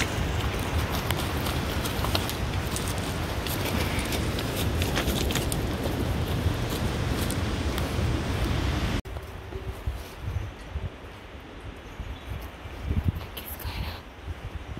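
Hooves of a laden pack horse clattering over loose rocks, a steady run of sharp knocks over a loud rushing background. About nine seconds in it cuts to a much quieter stretch of wind and rustling with a few knocks.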